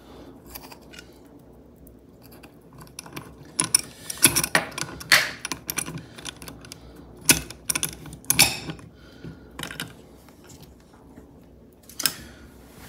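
Hands repositioning soldered wires and a connector in a small bench vise: irregular light clicks, taps and small knocks, busiest a few seconds in and again past the middle.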